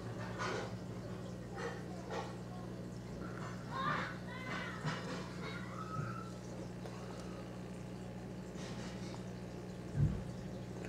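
A steady low hum runs throughout, with faint, indistinct background voices about four seconds in and a few soft knocks.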